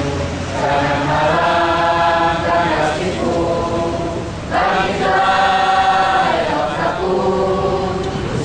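A crowd chanting together in unison, in long drawn-out phrases of two to three seconds with short breaks between.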